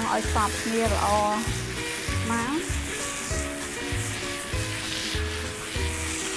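Minced pork and fermented fish paste frying with a steady sizzle in a nonstick pan while a wooden spatula stirs it. Background music with a steady beat plays under it.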